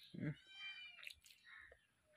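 A cat meowing once, a high arching call about half a second long, with a few soft clicks of fingers working food on a steel plate.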